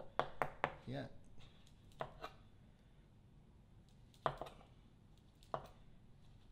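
Kitchen knife knocking on a cutting board while a pink grapefruit is cut and its skin sliced away: irregular sharp taps, several close together in the first second, then a pair about two seconds in and single louder ones near four and five and a half seconds.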